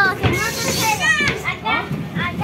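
Children's high-pitched voices: chattering and calling out while playing.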